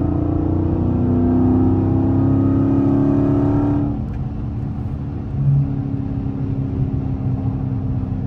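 Dodge Challenger Scat Pack's 6.4-litre HEMI V8 pulling under acceleration, heard from inside the cabin, its pitch climbing slightly. About four seconds in it eases off to a steadier, quieter cruising drone.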